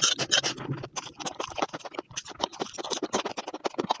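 Crunchy eating sounds: a dense, irregular run of crackling clicks as noodles are bitten and chewed.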